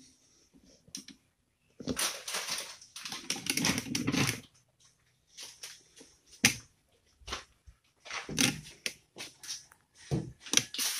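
Gypsum board being cut and handled by hand: a rough scraping stretch lasting a couple of seconds, then scattered sharp clicks and knocks and another short scrape.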